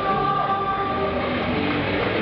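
Live rock band playing amplified through the PA, electric guitars, bass, drums and violin together, with notes held and stepping from one pitch to the next.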